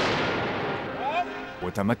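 An explosion, a loud sudden blast whose rumbling decay dies away over about a second and a half.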